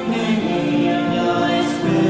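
Choral music, voices singing long held chords, with a new chord coming in near the end.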